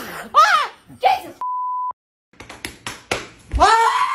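Startled, high-pitched voices crying out, cut by a steady half-second censor bleep that covers a word. A few sharp knocks come just before a last loud cry near the end.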